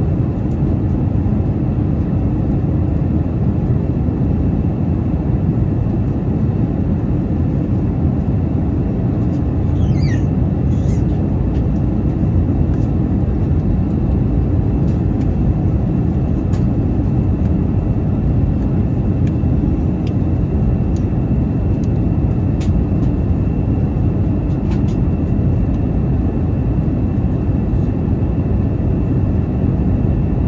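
Steady cabin noise inside an Airbus A319 in flight: jet engine and airflow as an even, low rush that does not change, with a few faint clicks and a short squeak about ten seconds in.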